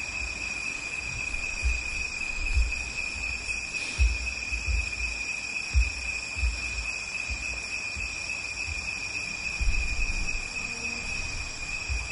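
A steady high-pitched whine runs unbroken through a pause in a recorded talk, with soft low thumps now and then.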